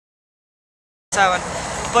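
Dead silence for about the first second, then sound cuts in abruptly: a woman's voice over a steady low hum of street traffic.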